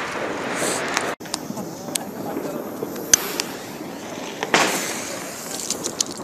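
Firecrackers going off around the street, a scatter of short sharp cracks with one louder bang at about four and a half seconds.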